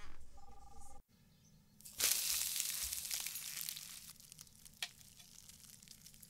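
A brief two-tone electronic beep, then, after a cut to silence, a loud steady hiss that starts abruptly about two seconds in and fades slowly over the next couple of seconds.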